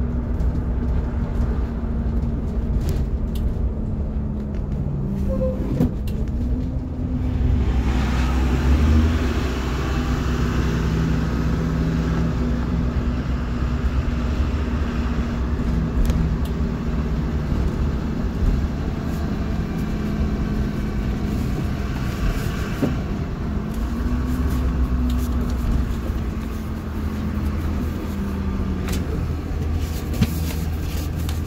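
Cabin sound of a 2008 Blue Bird All American rear-engine CNG school bus on the move: a steady engine drone with road and tyre noise that gets louder about a quarter of the way in as the bus picks up speed. The engine's pitch rises and falls twice.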